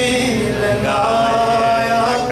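A man's voice singing a Punjabi naat into a microphone, drawing out long, wavering notes without a break.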